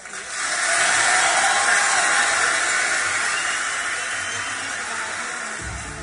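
Audience applause that swells up over the first second as the song ends, then slowly dies away.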